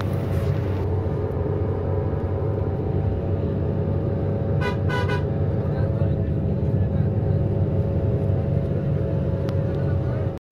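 A coach's engine and road rumble running steadily, heard from inside the cabin, with a vehicle horn giving two quick toots about halfway through.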